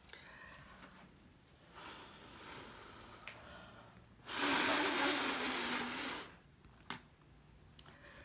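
A person blowing by mouth across wet acrylic paint to push a poured cell out into a bloom: a soft blow about two seconds in, then a long, strong blow of about two seconds in the middle. A short click comes near the end.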